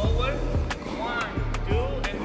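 Tennis balls struck with a racket in quick succession, a sharp pop about every two-thirds of a second, over background music with a steady beat.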